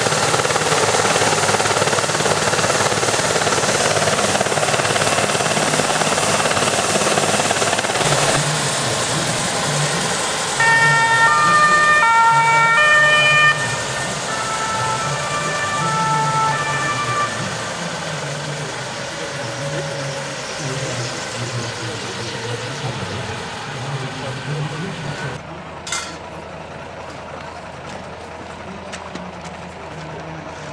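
A BK 117 helicopter's turbine and rotor running steadily and loudly, followed by an emergency vehicle's two-tone siren from about ten to seventeen seconds in. The sound then drops to a lower background, with one sharp click near the end.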